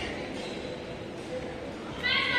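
Indistinct voices over the steady background noise of a large indoor badminton hall, with no shuttle hits or shoe squeaks.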